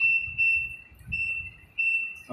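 IFB front-loading washing machine's control panel beeping as its buttons are pressed: a high steady tone repeated four times, each about half a second long, with short gaps between.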